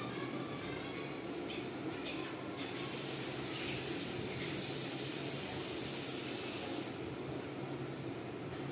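A steady hiss lasting about four seconds, starting and stopping abruptly, preceded by a few faint knocks.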